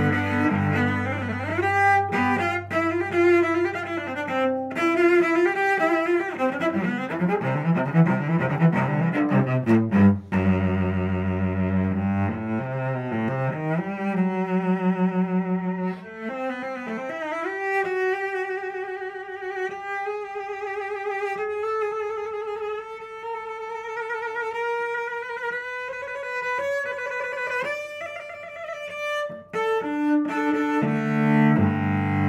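A 2016 William Scott cello played solo with the bow. For the first twelve seconds or so a low held note sounds beneath moving notes above it. After a brief dip about sixteen seconds in, a singing melody follows in the upper register, its long notes wavering with vibrato and climbing slowly.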